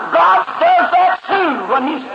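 A man preaching a sermon, speaking throughout.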